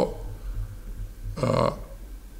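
A man's voice making one brief low hesitation sound mid-sentence, about one and a half seconds in, after a short pause, over a steady low hum.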